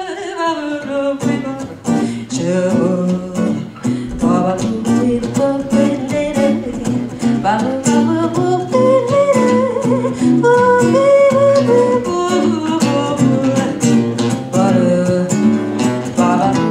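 Live jazz: a woman's voice finishes a falling sung phrase at the start, then acoustic guitars take over with plucked, rhythmic chords under a melody line.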